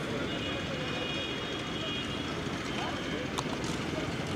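Open-air construction-site ambience: a steady low rumble with distant voices, and a couple of sharp clicks about three and a half seconds in.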